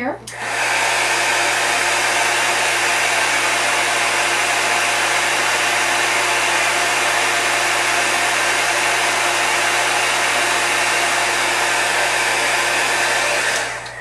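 Marvy heat embossing tool, a hairdryer-like heat gun, running with a steady blowing noise while it melts ultra-thick embossing enamel powder on a paper die cut. It switches on about half a second in and cuts off just before the end.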